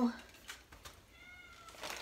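A domestic cat meowing once, faintly: a short, thin, high call about a second in.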